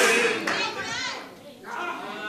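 Faint voices from the congregation in a large hall, murmuring and calling out in a pause of the preaching, with the hall's echo of a loud shout dying away at the start.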